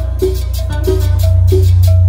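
Live cumbia band playing an instrumental passage on accordion, electric guitars, bass and drum kit: a steady beat, short repeated melody notes about three a second, and a loud sustained bass line.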